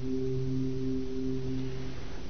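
A sustained low electronic drone note in an electronic music track: one steady pitch with a few overtones, held without a beat.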